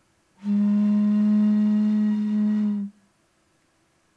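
A plastic water bottle blown across its mouth, sounding one steady low tone for about two and a half seconds.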